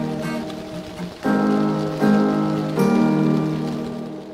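Background music: sustained chords, with new ones struck a little over a second in and then twice more at intervals of under a second.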